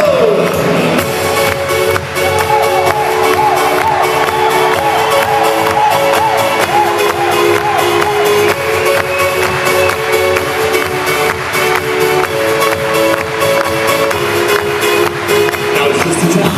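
Live Eurodance band playing an instrumental passage: held keyboard chords over a steady dance beat, with electric guitar.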